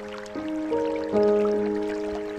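Soft piano playing slow, ringing notes, a new note struck about every half second with the loudest just past the middle, over the steady trickle of running water.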